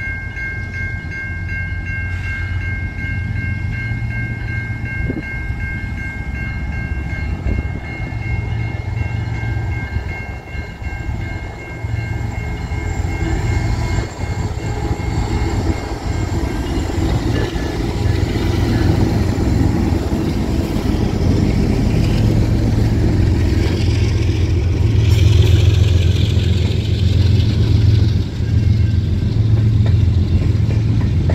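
A CN freight train's two GE diesel locomotives, an ET44AC and an ES44AC with V12 engines, approach and pass with a deep engine rumble that grows steadily louder. After them come the rumble and clatter of the freight cars rolling by, loudest in the last third.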